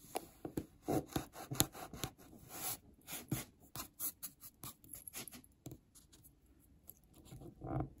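Kinetic sand crunching and scraping as a plastic cookie cutter is pressed down through it: a run of short, irregular crackles that thins out about six seconds in, then a louder crunch near the end.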